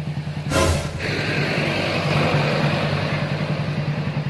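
Motorcycle engine idling steadily, with a brief rush of noise about half a second in.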